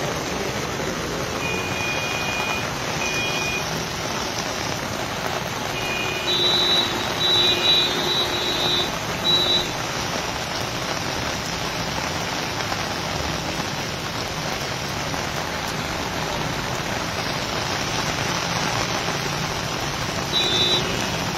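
Heavy rain pouring steadily onto a wet street, with vehicle horns honking several times a few seconds in.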